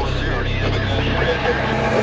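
Film trailer soundtrack: a low, steady drone with a hiss of noise over it.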